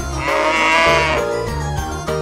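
A single bleating farm-animal call, about a second long and wavering in pitch, laid over a children's keyboard song with a steady bass line.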